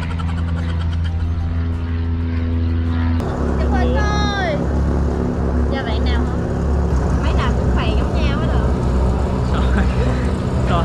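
A steady low mechanical drone, like an engine or machine running nearby, which changes slightly about three seconds in, under people's voices and laughter.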